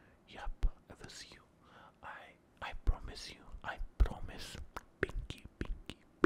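A man whispering close to the microphone, with small sharp clicks between the words.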